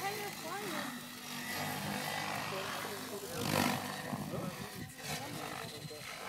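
Electric Henseleit TDR radio-controlled helicopter flying 3D aerobatics: motor and rotor running with a steady whine, swelling into a loud whoosh of the rotor blades about three and a half seconds in.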